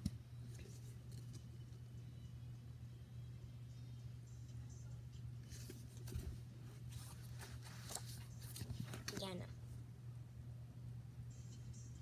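Books and paper being handled: light rustles and clicks in clusters about halfway through and again near nine seconds in, over a steady low room hum.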